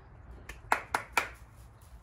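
Three quick, sharp hand claps, calling a dog to come.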